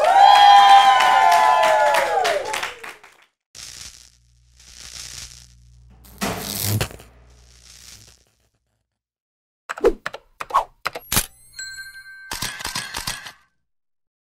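A man's long, loud "woo!" shout, then an animated logo sting made of sound effects: several airy whooshes, a sharp hit about six seconds in, and a run of glitchy clicks and short electronic beeps near the end.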